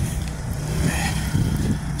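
City street traffic: cars running past with a steady low rumble.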